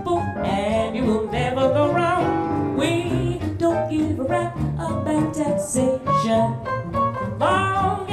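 A woman singing jazz live, accompanied by a small band with double bass and electric archtop guitar.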